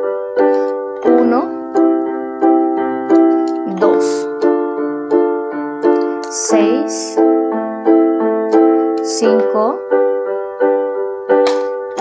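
Electronic keyboard in a piano voice playing block chords, each chord struck again about every 0.7 seconds and decaying between strikes, changing chord every few seconds. It is a vi–V–I–ii chord progression being played.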